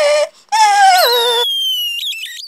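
A person's high-pitched wailing cry: one held note breaks off, then a second cry starts about half a second in and drops sharply in pitch about a second in, with a thin high tone sliding slowly downward above it.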